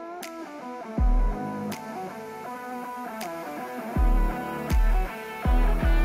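Soundtrack music: a melody over deep bass hits and sharp snaps, the bass hits coming closer together near the end.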